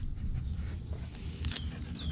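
A man biting and chewing a fish wrap close to the microphone, with soft mouth clicks over a low steady background. A bird gives a few short high falling chirps, the clearest about a second and a half in.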